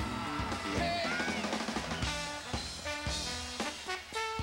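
Live funk and soul band playing: a drum kit keeps a steady beat under horn-section lines from trombone and saxophone.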